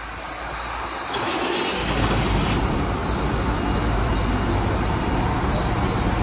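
Fire truck's diesel engine running at a steady idle, its low rumble coming in abruptly about two seconds in, after a single click.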